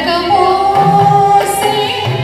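A woman singing a Telugu film song into a microphone over a recorded backing track, holding one long note for about a second.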